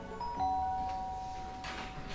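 Two-tone doorbell chime: a higher ding, then a lower dong a moment later, both ringing on and fading slowly over soft background music.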